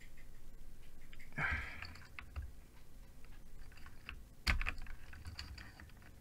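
Keystrokes on a GammaKay LK67 mechanical keyboard fitted with Feker Panda tactile switches, its silicone case dampening still in place. There are a few separate key presses, the loudest about 1.5 s and 4.5 s in.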